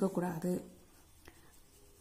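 Pencil writing on paper, a faint scratching as a word is written out, with one light tap about halfway through.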